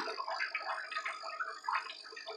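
Faint, irregular splashing and dripping of water as a hand moves about in a shallow fish tank to catch a betta.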